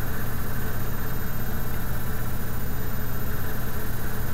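Steady low hum under a constant hiss, with no other sound rising above it.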